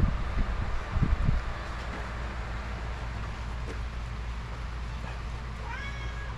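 A few low thumps in the first second and a half over a steady background hum, then a cat starts to meow just at the end.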